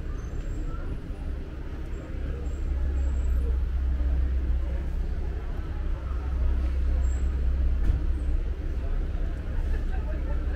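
Street traffic: a steady low engine rumble from a nearby vehicle, louder through the middle, over general street noise.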